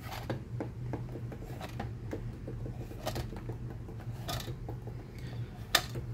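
Nerf N1 foam darts being pushed into and handled in a plastic X-Shot Long Shot dart magazine: light, irregular plastic clicks and taps, with a sharper click near the end, over a low steady hum.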